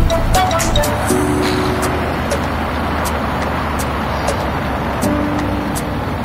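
Background music with a regular beat over the steady rush of a motorcycle ride, wind and engine noise together.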